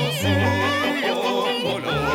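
Music: a high, operatic-style voice with wide vibrato sings without words over an accompaniment of held bass notes that change about once a second.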